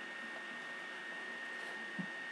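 Steady background hiss with a constant high-pitched whine running under it: the room tone and self-noise of a webcam microphone.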